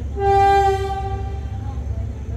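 Diesel locomotive's horn sounding one steady blast of about a second and a half, over a low steady rumble. It answers the green flag shown from the platform: the train's signal that it is about to depart.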